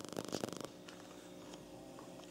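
Quiet room tone: a few soft clicks in the first part of a second, then a faint steady hum.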